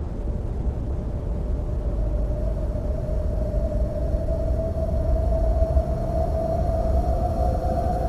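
Soundtrack build-up effect: a deep, noisy rumble under one sustained tone that creeps slowly upward in pitch while the whole sound swells a little louder.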